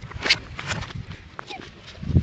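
A person's voice played backwards, garbled and unintelligible, with a few short knocks and rustles.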